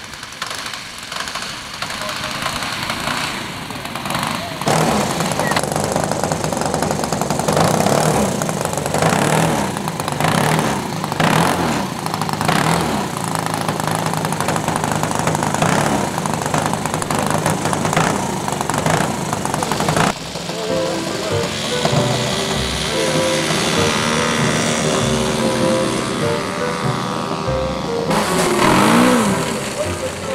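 A model aircraft engine running, with a low steady hum and rough noise. About two-thirds of the way in it gives way abruptly to music with held notes.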